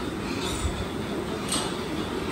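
Steady rushing background noise with no distinct events, like machinery running.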